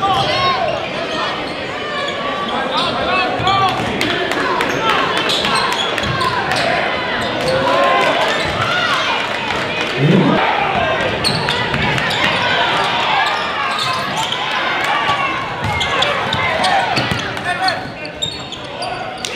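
Live sound of a basketball game in a gym: a basketball being dribbled on the hardwood floor, sneakers squeaking, and the crowd's chatter, all echoing in the hall.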